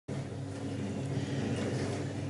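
Room tone: a steady low hum with a faint hiss over it.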